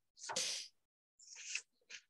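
A short, noisy breath from a person close to the microphone, lasting about half a second, followed by faint mouth sounds.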